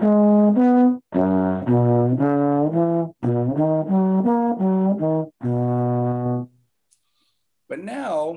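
Trombone playing a chord-practice exercise in C major, ascending. It comes in four short runs of separate, stepping notes with brief breaks between them, and the last run ends on a held note about six and a half seconds in.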